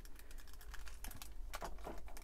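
Plastic panels of a Wei Jiang M03 Battle Hornet transforming robot figure clicking faintly as they are pressed and tabbed into place, a scatter of small clicks with a few sharper ones in the second half.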